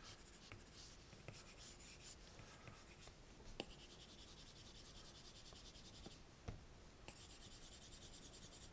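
Faint scratching of an Apple Pencil tip stroking across an iPad's glass screen, in short passes that come and go, with two light taps of the tip on the glass.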